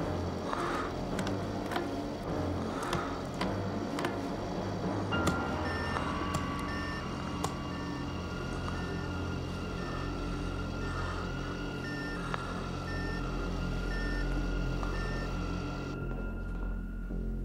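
Dark synthesizer film score with low sustained notes and scattered knocks in the first few seconds. From about five seconds in, a steady high tone sounds under a short beep that repeats about twice a second.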